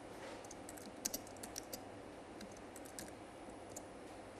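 Faint typing on a computer keyboard: irregular runs of quick key taps with short pauses between them.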